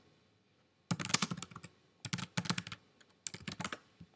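Typing on a computer keyboard: three short runs of keystrokes with brief pauses between them.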